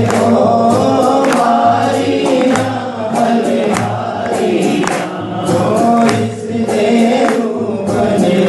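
Hindi devotional bhajan: voices singing a melody over instrumental accompaniment with a steady, repeating beat.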